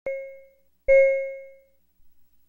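Two bell-like chime strikes at the same pitch, the second louder, each ringing and fading away within about a second.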